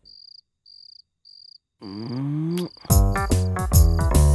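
Cricket chirping in short, evenly spaced pulses, a little under two a second. About two seconds in a rising tone sweeps upward, and about three seconds in loud background music with a regular beat starts over the chirping.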